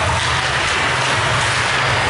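Steady, loud ice-rink ambience during a hockey game: a continuous rushing noise with a low rumble underneath and no distinct single event.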